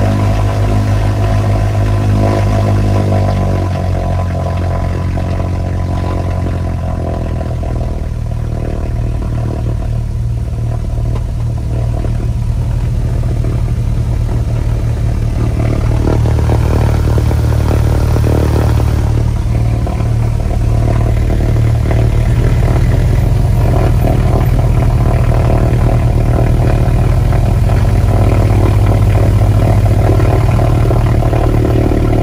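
Twin piston engines of a Britten-Norman Islander running steadily at low taxi power, heard from inside the cockpit, with a deep propeller drone. The engine note dips slightly early on and grows a little louder around the middle and again later.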